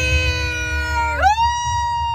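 Drawn-out 'woo'-style cheering voices: a lower held voice fades out about a second in as a higher one glides up and holds the note. A steady low car rumble runs underneath.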